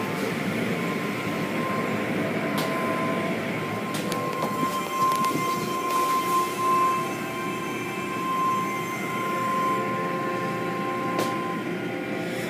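Automatic tunnel car wash machinery running: a steady mechanical drone of motors, spinning brushes and spraying water. A steady high whine sounds through most of it, with a few sharp clicks.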